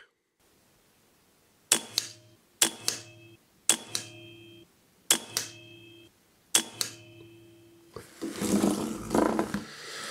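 A .22 pre-charged pneumatic air rifle fired five times, about a second to a second and a half apart. Each shot is a sharp crack followed about a quarter second later by a second click from the pellet striking the target. Near the end there is a burst of rustling noise.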